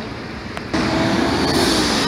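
Outdoor ambience, then an abrupt jump about two-thirds of a second in to louder street traffic: a city bus and cars running, with a steady engine hum.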